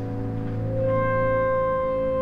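Background score music of held, sustained notes, with a new note swelling in about a second in.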